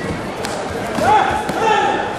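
Two sharp kicks landing on taekwondo body protectors, one about half a second in and one near a second and a half, with loud shouts rising in pitch and then held between and after them.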